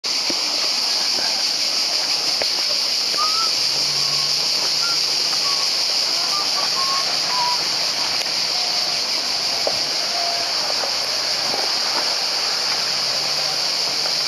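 Steady high-pitched drone of a cicada chorus, even in loudness throughout, with a few faint short chirps and faint distant voices.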